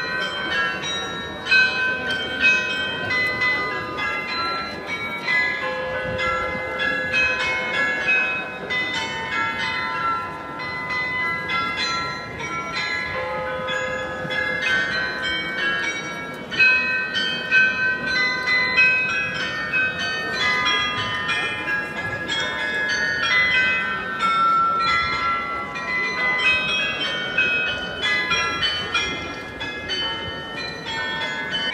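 The Munich Rathaus-Glockenspiel's tower bells playing a tune: a quick, continuous run of struck bell notes that ring on and overlap one another.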